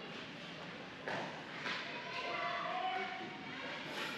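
Indistinct voices of spectators at a youth ice hockey game, with a sharp knock about a second in and another just after, and a drawn-out call near the middle.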